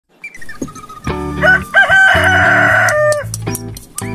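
A rooster crowing once, a long cock-a-doodle-doo with a held, wavering middle note that falls away at the end, over background music with a steady low bass line.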